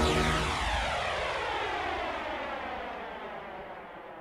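End of a speed garage track: the beat and bassline stop about half a second in, leaving a swept, flanged noise that falls in pitch and fades steadily away.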